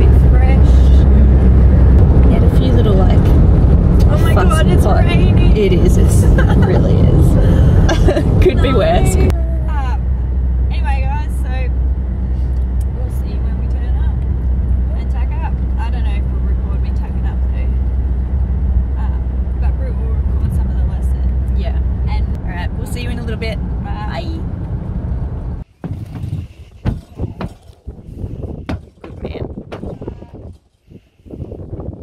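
Steady low drone of road and engine noise inside a moving car's cabin, with chatting voices over it. About 25 seconds in the drone stops abruptly and much quieter, scattered sounds follow.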